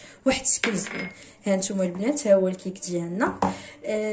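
An aluminium tube cake pan knocking against a granite countertop as it is handled, with a few sharp clatters in the first half-second, followed by a woman's voice talking.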